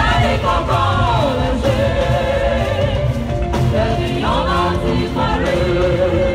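Women's church choir singing a gospel praise song through microphones, the voices gliding up and down over a loud, bass-heavy band backing.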